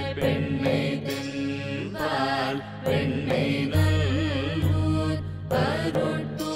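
Devotional chanting of mantras: a wavering, bending sung melody over a steady low drone, with sharp strikes about once a second.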